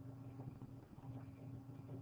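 Quiet room tone with a steady low hum and a few faint ticks.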